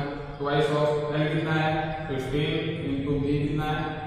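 A voice chanting in long, steady held notes with short breaks between phrases, like a recited mantra.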